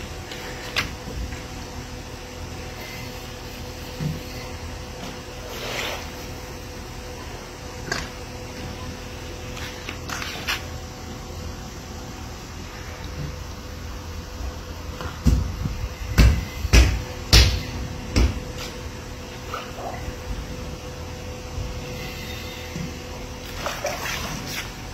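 Swimming-pool water sloshing and lapping against the pool edges, set surging by earthquake shaking, over a steady hum. A run of heavy low thumps comes about 15 to 18 seconds in.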